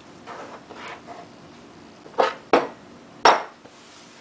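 Dough being worked on a kitchen countertop: a few soft pressing sounds, then three sharp knocks in the second half as the dough and hands hit the counter.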